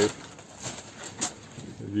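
A short pause between spoken phrases, filled with faint handling noise and two light clicks as bags are moved about in the back of a van.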